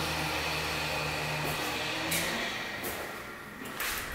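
A steady low mechanical hum with a few pitched lines over a soft hiss; the hum fades about two seconds in, leaving a quieter hiss.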